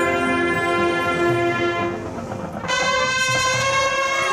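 Marching band brass holding long sustained chords. A lower chord is held, there is a brief dip, then the full band comes in on a loud, bright chord about two-thirds of the way through.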